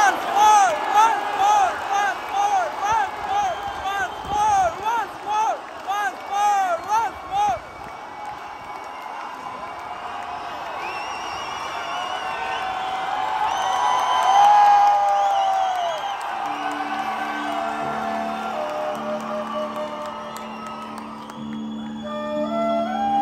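Concert crowd chanting in rhythm, calls rising and falling about twice a second, then cheering and whooping with one long held shout. About two-thirds of the way through, the band comes in with sustained chords, and a stepping melody starts near the end.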